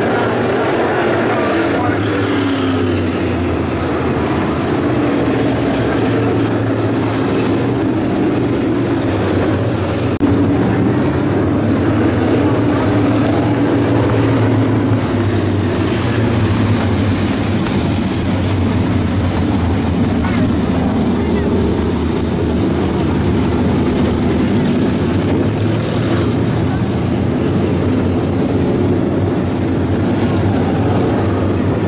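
A field of dirt late model race cars with GM 602 crate V8 engines circling the track at slow pace speed, lining up two by two for a restart. Their blended engine drone is steady, with the pitch rising and falling slowly as cars pass.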